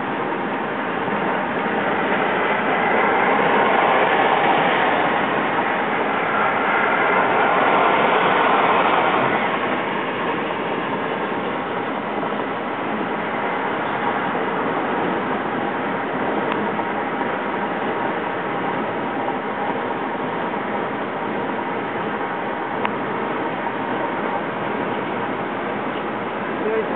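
Road noise inside a moving car: a steady rush of tyres and wind that grows louder twice in the first ten seconds, then holds level.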